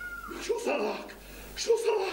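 A man's voice shouting in Arabic, in short excited bursts.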